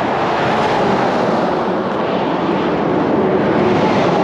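Semi-trucks passing close on a highway: a steady loud roar of tyres and diesel engines, swelling slightly near the end as a tractor-trailer goes by.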